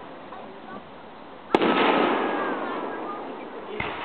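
Aerial fireworks shell bursting with a sharp bang about a second and a half in, its boom rolling and fading away over the next couple of seconds. A second, lighter bang comes near the end.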